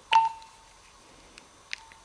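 Mobile phone beeping: a sharp click with a short beep just after the start, then a fainter click and brief beep near the end.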